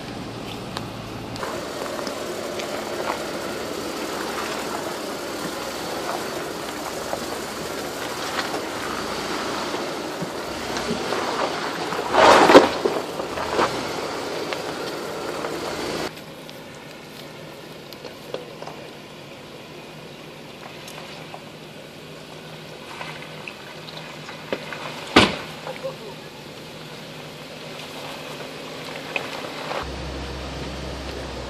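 Off-road Jeep grinding slowly over a rocky trail, heard from inside the cab as a steady engine and driveline rumble. A loud knock comes about twelve seconds in. Just past halfway the sound drops to a quieter, thinner hum, and a single sharp click comes later.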